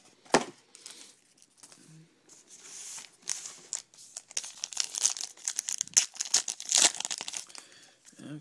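A trading-card pack's crimped plastic-foil wrapper being torn open and crinkled by hand, a dense run of crackling tears over the second half. A single sharp knock comes about a third of a second in.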